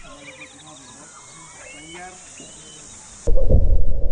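Faint outdoor background with thin, high chirping calls, then about three seconds in a sudden loud low rumble with a steady hum sets in.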